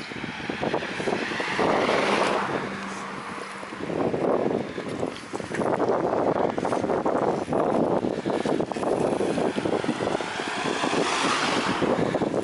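Wind rushing over the microphone of a camera carried along on a moving bicycle, the rush swelling and easing.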